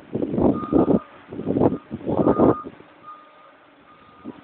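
Vehicle reversing alarm: a single steady tone beeping on and off a little more than once a second. In the first half it is partly covered by three loud, rough bursts of noise that stop about two and a half seconds in.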